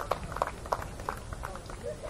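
Sparse, uneven clapping and a few voices from a small audience at the end of a live song, slowly getting quieter.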